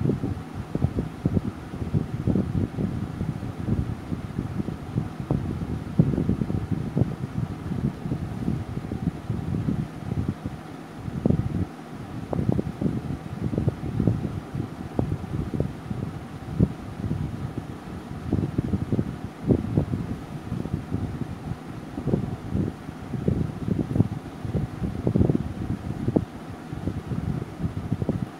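Wind buffeting the microphone: an irregular low rumble that swells and drops every fraction of a second, with no steady tone.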